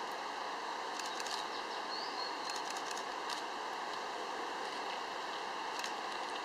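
Steady, faint outdoor background hiss, with a few faint high ticks and a brief high chirp about two seconds in.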